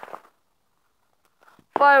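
A voice talking trails off, then about a second of near silence, then speech resumes near the end. No firework bangs are heard.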